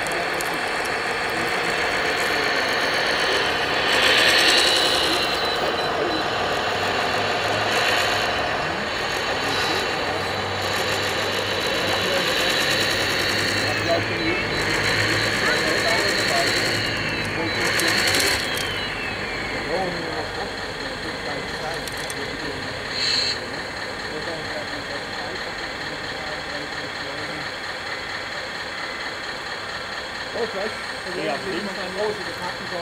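Radio-controlled O&K model hydraulic excavator and model truck running, a steady motor and pump whir with a high whine. In the middle stretch there are rising-and-falling whines as the machines move, with a few short louder surges.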